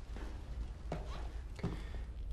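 Quiet room tone with a steady low hum, broken by three faint, short knocks spaced well apart.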